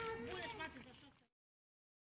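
A person's voice speaking briefly over outdoor background. It fades out a little over a second in and gives way to complete silence.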